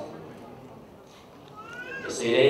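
A pause in a man's amplified speech in a hall: faint room sound, then a brief rising, whistle-like tone near the end, just before he speaks again.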